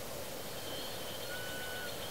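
Faint, steady high whine from the SkyWatcher EQ6-R Pro's declination stepper motor slewing under the hand controller, starting about half a second in, with a second, lower tone joining briefly near the end. Both sound over a steady background hiss.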